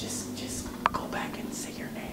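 Quiet whispered speech, with one short click a little under a second in.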